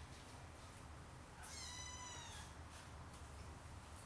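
Siamese kitten meowing once, a single high call lasting about a second that starts about a second and a half in and falls slightly in pitch, over a faint steady low hum.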